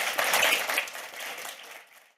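Audience applauding with dense clapping that thins and fades over the second second, then cuts off suddenly.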